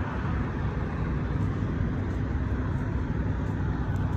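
Steady low rumble of truck engines and traffic noise, an even drone with a faint hum and no distinct events.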